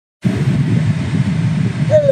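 Steady low road-and-engine rumble inside a moving car's cabin, starting abruptly just after the beginning. A man's voice begins right at the end.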